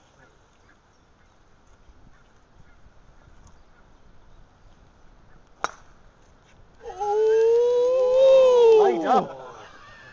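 A golf driver striking a ball off the tee: a single sharp crack about halfway through. About a second later comes a loud, drawn-out vocal cry lasting about two seconds that bends in pitch and slides down at the end.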